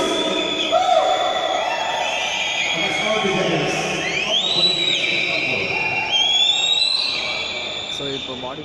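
Crowd cheering with many overlapping shouts and whistles, with rising whistles about four and six seconds in.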